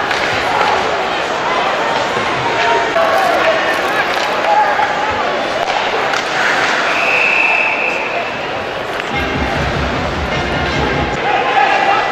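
Ice hockey arena sound: crowd chatter with sharp hits of sticks and puck and thuds against the boards. A short high steady tone sounds about seven seconds in, and a low rumble follows about nine seconds in.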